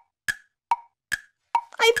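Wood-block tick-tock sound effect: short hollow knocks at two alternating pitches, about two and a half per second, a thinking-time cue while an answer is awaited. A woman's voice comes in just before the end.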